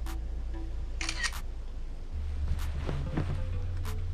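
Phone camera shutter click about a second in as the delivery photo is taken, with a few lighter clicks later, over background music with a steady low bass.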